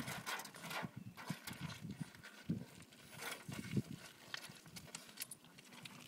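Loose pebbles crunching and clattering in an irregular patter of short clicks as a puppy scrambles and rolls about on them.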